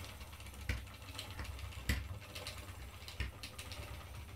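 Wooden treadle spinning wheel turning as it is pedalled, with a light knock about every second and a quarter in time with the treadle strokes, over a low steady rumble.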